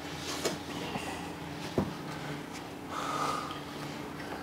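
Light workshop handling noises as a motorcycle cylinder block (barrels) is held and shifted over the pistons: a single small knock just under two seconds in and a short hiss near three seconds, over a steady low hum.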